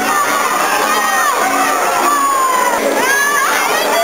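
A crowd of children shouting and cheering, many high voices overlapping and rising and falling in pitch.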